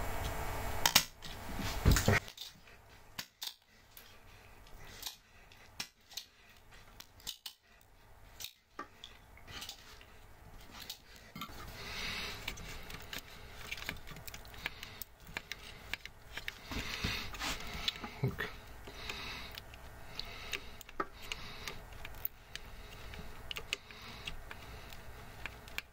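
Scattered small metallic clicks and clinks of a soldering iron and screwdriver against an amplifier's circuit board and metal chassis while parts are desoldered, with a few louder knocks about a second in.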